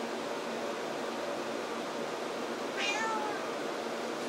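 Tabby house cat giving a single short meow about three seconds in, falling in pitch: a demand to be petted.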